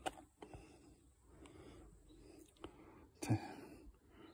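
Quiet background with a few faint, short clicks, then a brief spoken syllable near the end.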